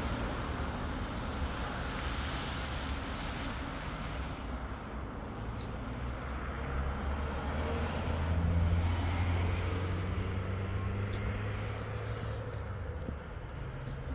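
A motor vehicle's engine hum, growing louder to a peak a little past the middle and then fading, over steady outdoor background noise.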